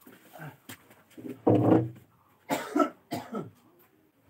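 A person coughing three times: one loud cough about a second and a half in, then two shorter ones.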